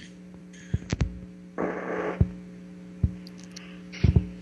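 Steady electrical hum on the call's audio line, with about four short clicks scattered through it and a brief burst of hiss about one and a half seconds in.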